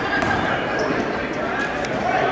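Basketball dribbled on a hardwood gym floor under the steady, echoing chatter of a crowd of onlookers.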